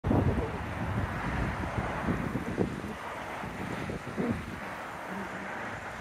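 Wind buffeting the microphone in uneven gusts over a steady outdoor hiss, strongest in the first half-second.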